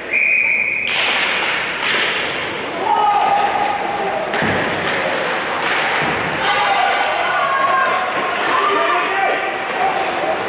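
Ice hockey arena sounds: a babble of players' and spectators' voices with several thuds of pucks and sticks hitting the boards. It opens with a steady high tone lasting under a second.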